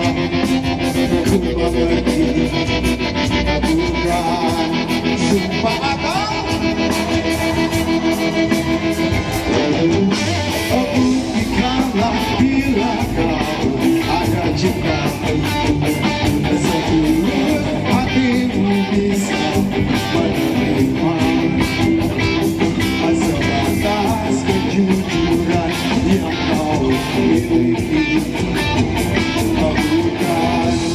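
Live rock band playing: electric guitars, bass, drums and keyboards, with a singer's vocals, heard from the audience through the PA.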